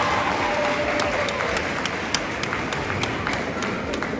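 An audience applauding, with individual claps standing out sharply against the general clapping and crowd voices mixed in.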